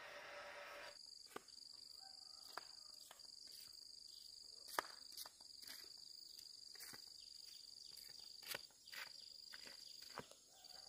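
Faint hum for about a second, then a steady high-pitched insect trill sets in, broken by a few brief gaps. Scattered faint clicks come through it.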